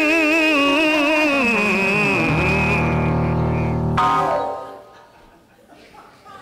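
A long sung or hummed note with a steady vibrato, sinking in pitch, and a low held organ-like keyboard chord under it from about two seconds in. Both stop sharply about four seconds in, leaving only the room.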